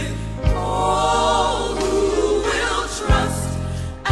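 Gospel choir singing with band accompaniment: steady bass notes under the voices, and a drum hit about half a second in and another near the end.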